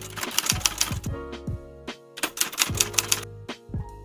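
Background music: a beat with quick, evenly spaced ticking percussion, deep falling-pitch kick drums and a held chord, with a brief break about two seconds in.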